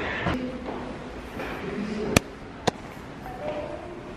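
Two sharp clicks about half a second apart, a little after two seconds in, over faint voices.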